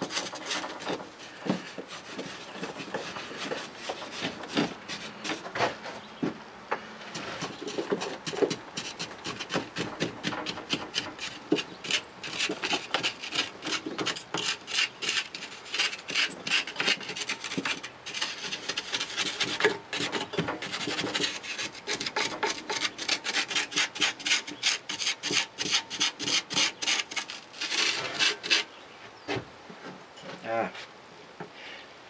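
A hand tool scraping and brushing packed molding sand off a freshly poured metal casting of a steam engine body, in quick repeated strokes of grit rasping on metal, several a second, growing faster and louder in the second half.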